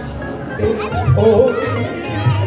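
Children's voices chattering over music with a pulsing low beat that comes in about half a second in.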